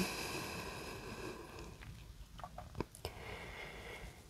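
A woman's long, soft exhale while holding a yoga pose, fading out over the first second and a half. A few faint clicks and quiet breathing follow.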